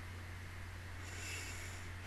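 Quiet room tone with a steady low hum from the microphone line, and a soft breath through the nose close to the microphone about a second in.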